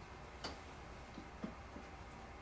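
Seam ripper picking at and cutting stitches in a fabric seam: one sharp click about half a second in, then a few faint ticks.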